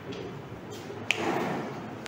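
Faint room noise with a single short, sharp click about a second in.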